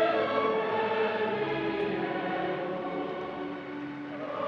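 Choir singing slow, long held notes.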